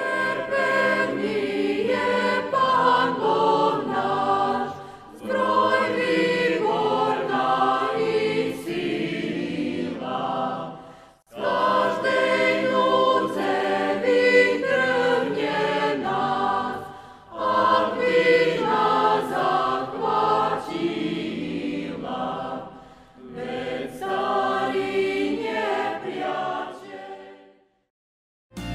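A choir singing a hymn in about five phrases of roughly five seconds each, with short breaks between them, fading out at the end.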